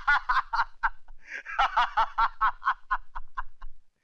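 A person laughing heartily in quick, evenly spaced ha-ha pulses, about five a second, with a short break about a second in before the laughter picks up again.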